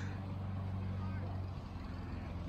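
A steady low mechanical hum, like a motor or engine running at a constant speed, over faint outdoor background noise.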